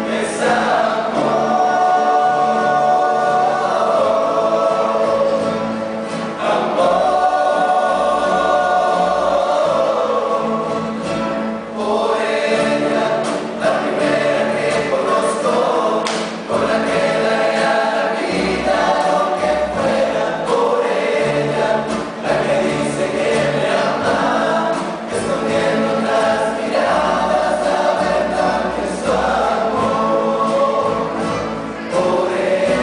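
A rondalla singing: a chorus of male voices in harmony holding long sustained chords, accompanied by strummed acoustic guitars and a double bass, in phrases broken by short breaths every few seconds.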